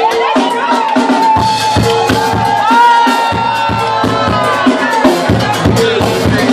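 A live band starting a song, with drums and percussion over bass, and a long held high note that fades out about five seconds in.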